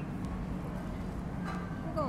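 Restaurant ambience: a steady low hum with faint voices in the background and a couple of faint clicks, ending with a short falling vocal sound.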